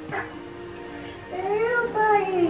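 A young child's whiny cry: one drawn-out call that rises and then falls in pitch, starting about halfway through after a quieter moment.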